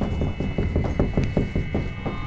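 Rapid rattling knocks, about seven a second, of furniture shaking in the room, over a low rumble; the knocking eases off near the end.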